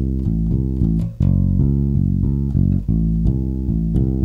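Electric bass playing chords as a run of plucked notes, switching back and forth between A minor and F-sharp minor, so the C of one chord turns into the C-sharp of the other. The notes change every few tenths of a second, with short breaks at each chord change.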